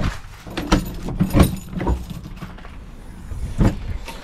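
Keys jangling with several clicks and knocks as a padlock is unlocked and a caravan's plastic front locker lid is opened.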